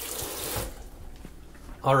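Kitchen faucet running as hands are rinsed under the stream; the water noise stops less than a second in.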